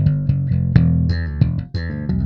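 Ernie Ball Music Man StingRay electric bass with an Aguilar pickup, played fingerstyle: a quick run of plucked notes, several a second, with a brief break in the line near the end.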